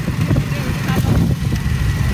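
Motorcycle engine running while the bike rides along, a steady low rumble.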